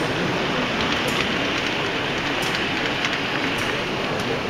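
Steady noise of a busy exhibition hall, with an H0 model freight train of tank wagons running along the layout's track.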